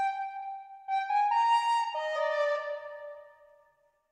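Sampled soprano recorder from the CineWinds Pro library playing a slow melody of a few held notes. It drops to a lower held note about two seconds in, which fades away near the end.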